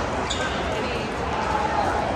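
A single sharp pop of a pickleball hit by a paddle about a third of a second in, ringing out in a large indoor hall.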